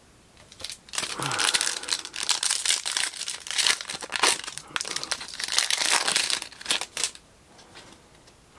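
Foil wrapper of a Prizm basketball card pack being torn open and crinkled by hand: a dense crackling rustle that starts about a second in and stops shortly before the end.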